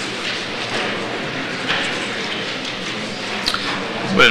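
Steady hubbub of a gathered audience in a hall, low murmuring and shifting about, with a single sharp click about three and a half seconds in.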